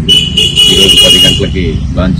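A vehicle horn sounds once, a steady high-pitched note lasting about a second and a half, over a man speaking.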